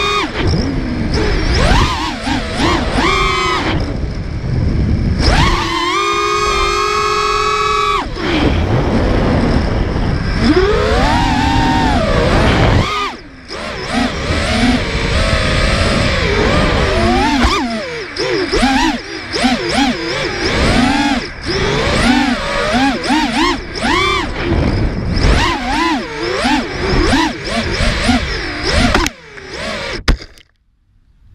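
Brushless motors and propellers of a 5-inch FPV racing quad whining in flight, the pitch rising and falling as the throttle changes, with a long steady high pitch held for a couple of seconds near the start. The sound cuts off at the very end as the quad comes to rest on the ground.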